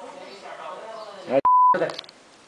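A single short, loud, steady beep of about a third of a second, with all other sound cut out around it: an edited-in censor bleep over a spoken word.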